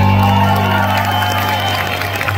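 Live rock band's final chord ringing out as a steady low drone, with the crowd cheering and clapping over it.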